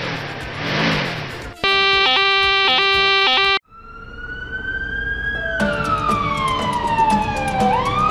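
A rush of noise, then a car alarm sounding in rapid repeating electronic tones for about two seconds, cut off abruptly. After it a police siren wails, slowly rising, falling, and sweeping up again near the end.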